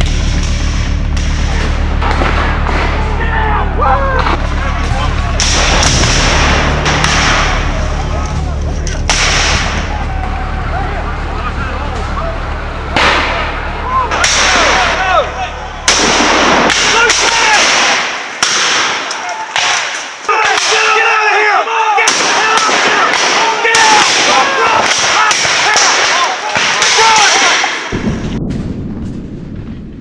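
Black-powder muzzle-loading musket shots, many and irregular, from a firing line, with men shouting. A low steady music drone runs underneath for the first half and comes back near the end.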